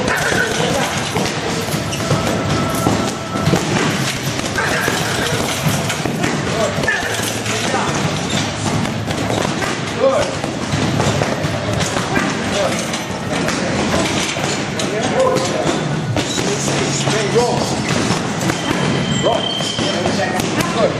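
Boxing gloves striking an Everlast heavy bag, punch after punch in quick combinations, over gym voices and music.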